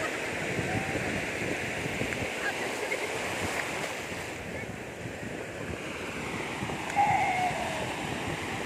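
Ocean surf breaking and washing over the shallows, a steady rush of water. A brief voice rises over it about seven seconds in.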